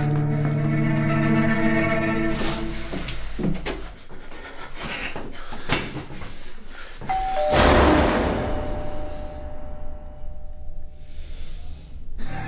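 Background music with sustained chords, then about seven seconds in a two-tone doorbell chime, a higher note and then a lower one that rings on and fades, struck together with a sudden loud hit.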